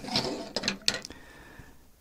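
Hard 3D-printed plastic parts clicking and knocking as they are handled and set down on a table, a few sharp taps in the first second, the loudest just before a second in, then quieter handling.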